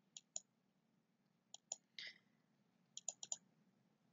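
Near silence broken by a few faint, short clicks in small groups, ending in a quick run of four about three seconds in.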